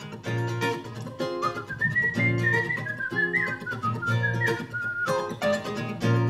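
Nylon-string acoustic guitar played in a steady strummed rhythm. A whistled melody rises over it about a second and a half in and ends near the five-second mark.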